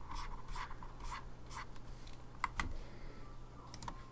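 Faint scratching of a stylus drawing strokes on a graphics tablet, with a couple of sharp clicks about two and a half seconds in.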